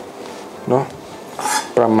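Chef's knife thinly slicing a young Thai round eggplant on a wooden cutting board: light taps of the blade on the board.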